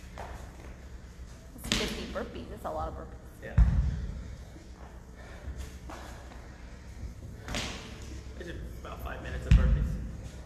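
Two heavy thuds on a rubber gym floor, about six seconds apart, from a man doing kettlebell burpee deadlifts. Each thud comes about two seconds after a shorter hissing rush.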